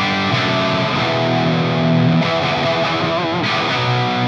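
Electric guitar played through a vintage-style Orange Overdrive OR80 valve amp head, set about halfway up, into Celestion Greenback 25 speakers: tight, glassy classic-rock crunch on sustained overdriven chords. The chords change several times, and a note wavers with vibrato near the end.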